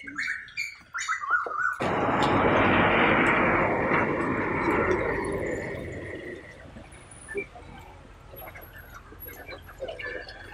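Birds chirping, then a sudden loud rush of noise about two seconds in that fades away over the next four seconds.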